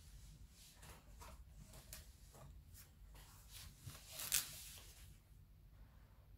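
Faint handling noise: soft rustles and scrapes in a loose series, with one louder rustle about four and a half seconds in.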